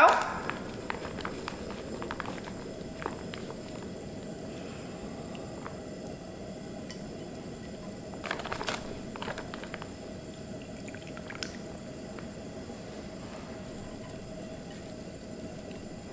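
Wet sauerkraut sizzling in hot oil in a nonstick frying pan, a steady hiss, with a few light clicks as it is dropped in and moved with chopsticks.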